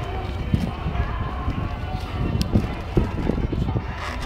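Outdoor crowd ambience: faint voices of people nearby over a steady low rumble of wind on the microphone, with irregular thumps of footsteps and camera handling.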